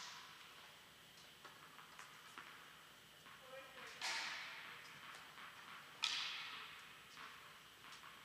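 Two sharp tennis ball strikes about two seconds apart, each ringing out in a long echo through a large indoor tennis hall. A few faint clicks come before them.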